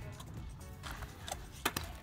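Kick scooter's small wheels rolling on cracked asphalt, a low rumble, with a few sharp clicks and knocks near the end, under faint music.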